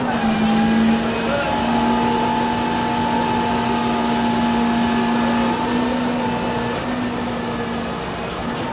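An engine running steadily at constant speed, a continuous hum that dips briefly a few times.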